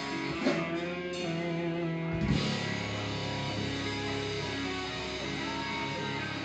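Rock band music led by electric guitar, with sustained ringing chords and two louder accents, one about half a second in and one just after two seconds.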